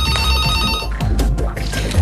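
A phone's electronic ring, a stack of steady high tones lasting about a second before it stops, over soft background music.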